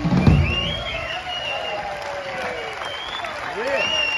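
A live band's closing chord ends on a final low hit, the loudest moment, just after the start, and then the audience applauds and cheers.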